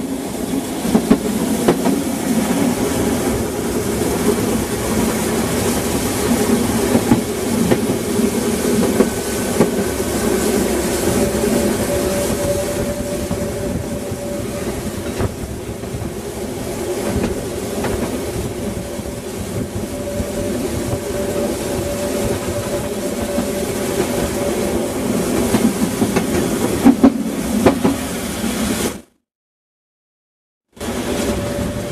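Harz narrow-gauge steam train running along the track: a steady rolling rumble with scattered clicks from the rails. It cuts off suddenly near the end.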